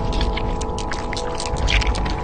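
Logo-animation sound design: a steady drone of several held tones over a low rumble, with crackles and ticks scattered through it.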